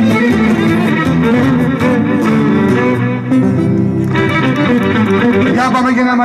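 Live Greek folk band playing an instrumental passage with no singing: a bowed lyra carrying the melody over a strummed and plucked lute and an electric bass guitar.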